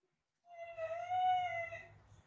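An animal's single drawn-out, high whine of about a second and a half, its pitch arching slightly and dropping at the end.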